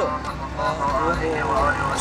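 A man's voice talking in short phrases, with street traffic running steadily behind.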